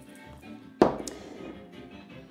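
A small glass jar set down on a kitchen worktop: one sharp knock just under a second in, followed by a couple of lighter clicks. Quiet background music runs under it.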